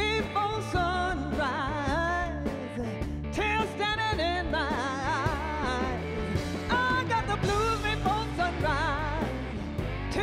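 Live blues-rock band playing: a woman singing over drums, electric bass and lap steel guitar, with strongly wavering melody lines.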